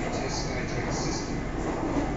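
Steady running noise of a BTS Skytrain moving along its elevated track, heard from inside the carriage.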